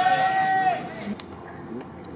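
A man's shouted call, one long held note of under a second, just after a pitch has been caught: the home-plate umpire calling the pitch. Fainter voices follow.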